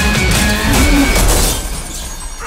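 Glass shattering, a dense crackling spray that thins out after about a second and a half, mixed over loud trailer music with a deep low rumble.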